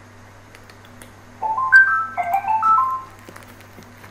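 A computer calling app's incoming-call alert: a short jingle of quick stepped notes, under two seconds long, starting about a second and a half in.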